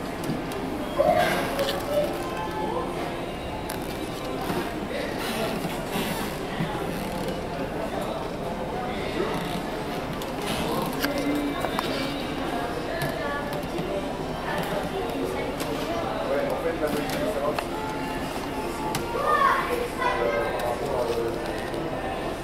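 Background music playing, with indistinct voices of people talking in the background.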